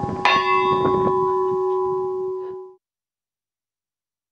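A small church bell in a stone belfry struck once, its clapper pulled by hand, ringing on in several steady tones. The ring cuts off suddenly near three seconds in.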